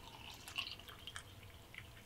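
Coffee poured from a glass coffee-maker carafe into a ceramic mug: a faint liquid trickle with a few small drips and splashes.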